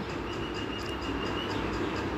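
Steady low background rumble and hiss, with a faint thin high whine for about a second in the first half.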